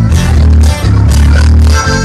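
Norteño band playing live: accordion and guitar over a heavy, rhythmic bass line, with no singing.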